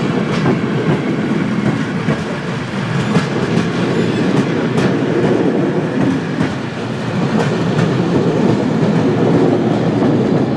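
A train rolling past, its wheels rumbling steadily on the rails, with faint irregular clicks from the rail joints.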